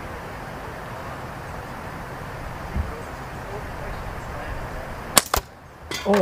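Steady wind on the microphone, then about five seconds in two sharp cracks in quick succession: the Titan Hunter aluminium slingshot being shot and its ammo striking the hanging card target.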